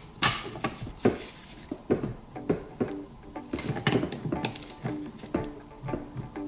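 Pliers gripping and working a steel valve stem out of a ductile-iron butterfly valve body: a run of irregular metal clicks, clinks and scrapes, some with a short ring.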